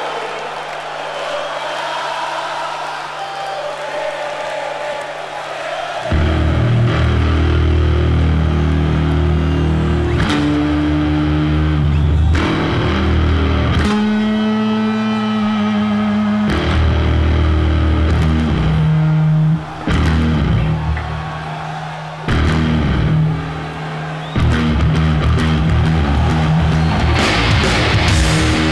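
Live hard-rock band in a stadium: a held low note over crowd cheering, then about six seconds in the bass, electric guitar and drums crash into a heavy riff played in stop-start hits with short breaks between phrases.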